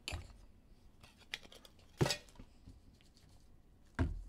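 Hands handling trading cards in rigid plastic holders on a table: light clicks and rustles, with a sharp plastic clack about two seconds in and another near the end.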